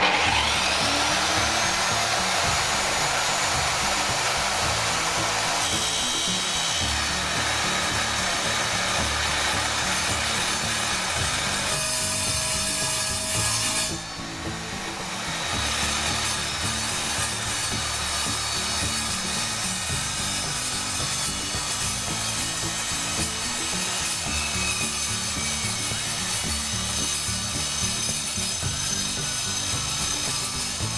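Evolution R210 mitre saw's motor spinning up with a rising whine, then its 210 mm multi-material blade cutting steadily through a steel tube, metal-on-metal grinding with sparks. The sound dips briefly about halfway through, then the cut continues.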